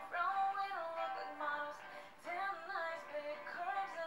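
A woman singing a soft pop melody with light backing, heard quietly from the played-back performance: two sung phrases with held notes and a short break in between.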